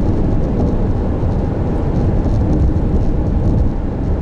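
Steady driving noise of a moving car heard from inside the cabin: low tyre, road and engine noise with no breaks.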